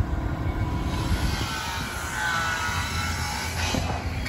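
Steady outdoor background rumble with a hiss that thickens about a second in and eases near the end, with no single clear event.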